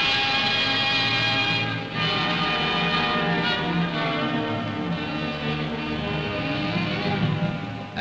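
Orchestral film-score music, sustained chords with no narration, laid over the archival footage; it dips briefly about two seconds in.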